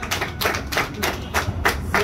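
A quick series of sharp taps, about five or six a second.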